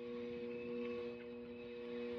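Microwave oven running, a steady electrical hum made of several level tones.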